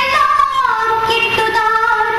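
A high-pitched voice singing, holding long notes and sliding smoothly from one pitch to the next.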